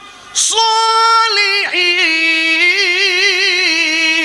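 A man chanting in a high, drawn-out melodic voice, amplified through microphones. The voice comes in about a third of a second in on a long held note, breaks briefly, then holds a lower note with a wavering ornament in the second half.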